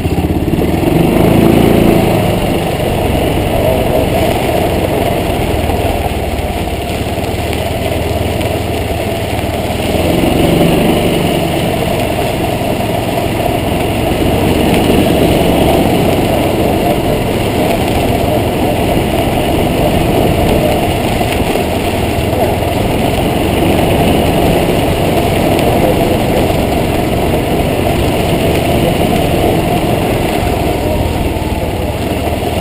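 Golf cart driving on a dirt road, its small engine running steadily, picked up by a camera mounted on the cart's side. It swells a little about a second in and again about ten seconds in.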